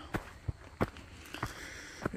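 Footsteps crunching on gravel strewn with fallen leaves, about four steps a third to half a second apart.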